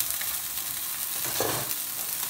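Sea bass fillets frying skin side down in hot oil in a frying pan: a steady sizzle.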